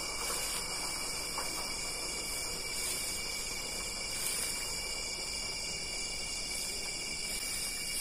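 A night-time chorus of crickets and other insects trilling steadily at several high pitches at once.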